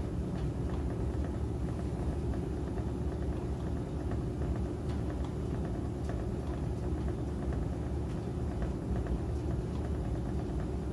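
1960 AMC Kelvinator W70M top-load washing machine spinning, its basket and agitator turning at speed. It runs at an even level, low-pitched and steady.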